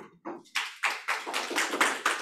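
A small audience applauding, the clapping starting about half a second in and going on steadily.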